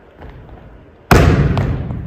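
A volleyball bouncing on a wooden gymnasium floor: one sharp thump about a second in, with a long echo from the hall.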